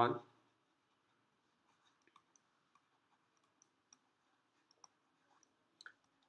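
Faint, irregular light clicks, a dozen or so, from a stylus tapping on a writing tablet while handwriting.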